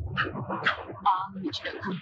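Speech: voices talking in the film's dialogue, with a brief wavering, higher-pitched vocal sound about a second in.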